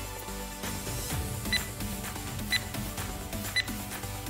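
Workout interval timer counting down, three short high beeps a second apart marking the last seconds of the exercise, over background music.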